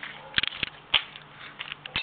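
Handling noise from a handheld camcorder being swung around: a few sharp clicks and knocks, the loudest about half a second and a second in, over a faint steady hum.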